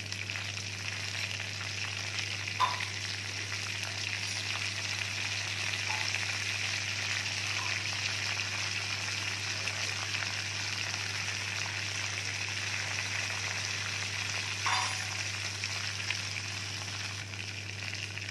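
Curry leaves sizzling and crackling in hot oil in a kadai, a steady frying hiss at the tempering stage, with a couple of short sharp pops. A low steady hum runs underneath.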